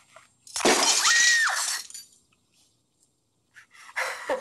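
A glass bowl of water and glass marbles knocking over onto carpet: about a second of loud splashing and clattering, starting about half a second in. A brief high squeal rises over it partway through.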